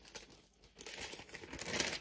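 Thin Bible pages rustling and crinkling as the book is leafed through to a passage, starting about a second in and growing louder toward the end.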